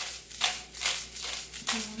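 Himalayan salt grinder being twisted by hand, its crystals crunching in a rasp about twice a second as salt falls into the blender.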